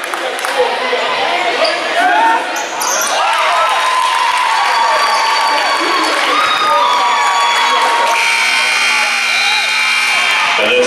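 A basketball bouncing on a gym floor under shouting and cheering from a high school crowd. About eight seconds in, a steady horn tone starts and holds: the scoreboard horn sounding as the game clock reaches zero.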